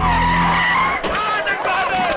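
Car horns blaring in one steady blast of about a second, followed by a crowd shouting.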